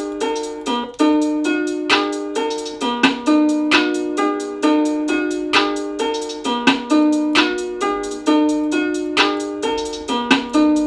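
A melody loop playing back from FL Studio: a steady run of pitched synth notes that each start sharply and die away, repeating a short phrase, with no bass under it.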